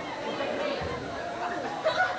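Overlapping indistinct voices of players and onlookers calling out and chatting, echoing in a large gym, with a single sharp knock near the end.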